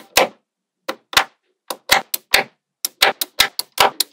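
Small metal magnetic balls clicking as clusters of them snap into place on a block built of magnetic balls: about a dozen sharp clicks with a brief ring, in irregular bunches, with a pause just after the start.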